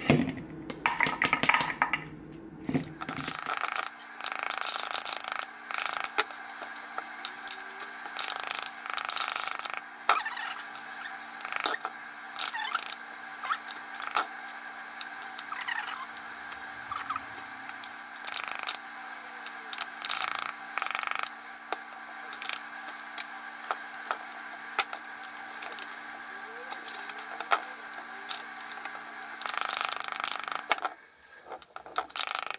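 Rubber spatula slapping the back of a halved pomegranate held over a mixing bowl, repeated irregular smacks that knock the seeds loose into the bowl. A steady hum runs beneath from about three seconds in.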